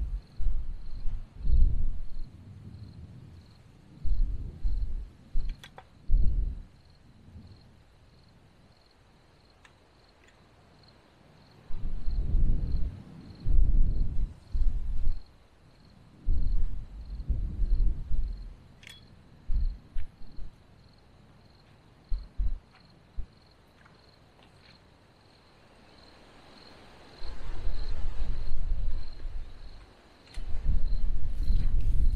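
Gusts of wind buffeting the microphone in irregular low rumbling bursts. Under them an insect chirps in a steady, evenly pulsing high tone, with a few faint sharp clicks.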